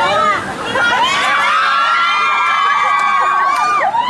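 Riders screaming together on a spinning amusement-park tower ride. A chorus of many high voices is held from about a second in until just before the end.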